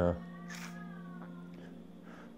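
A man's tearful voice says one word at the start, then a steady sustained low tone, like a background drone, holds through the pause. A short breathy sniff comes about half a second in.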